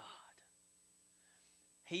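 A pause in a man's preaching: his last word trails off in a breathy, whisper-like way, then there is near quiet with a faint steady hum, and his voice starts again near the end.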